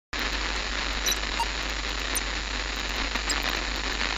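Steady static hiss with scattered faint crackles over a low, constant hum.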